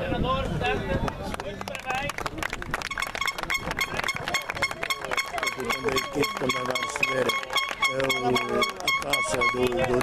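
Voices of several people talking. From about two seconds in, a steady high tone and a fast, even ticking run beneath the voices.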